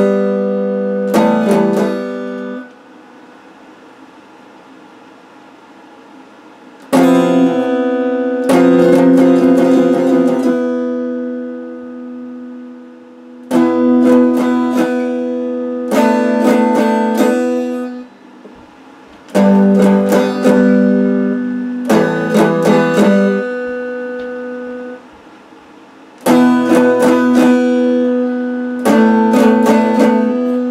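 Electric guitar strumming chords in short phrases of a few strokes each, every chord ringing for a second or two and then cut off. There is a pause of about four seconds near the start.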